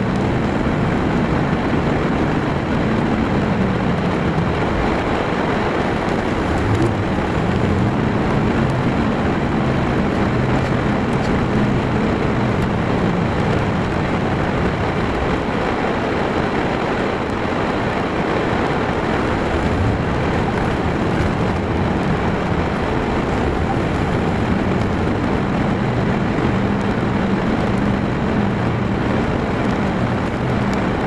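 A car driving through town, heard from inside the cabin: the engine runs steadily under a constant wash of tyre and road noise.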